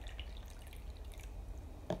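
Water being poured from a glass jar into a plastic measuring cup: a faint trickle and dripping, with a short click near the end.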